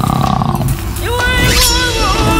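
A big-cat roar in a film-teaser soundtrack, fading over the first second. It is followed by a long held note over the music.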